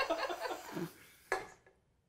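Laughter trailing off in the first second, followed by one short, sharp sound a little past the middle.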